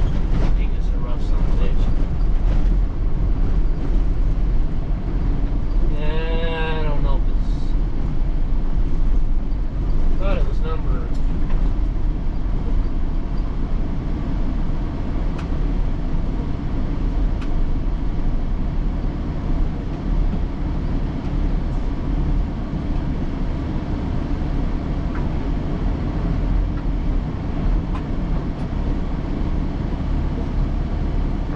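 Steady rumble of a truck driving on a dirt farm road, heard from inside the cab: engine and tyre noise with rattles. A short higher-pitched wavering sound comes about six seconds in.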